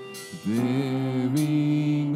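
Church worship band playing a song: several voices sing in harmony over acoustic guitar, bass and drums. After a short dip, the voices settle into a long held line about half a second in.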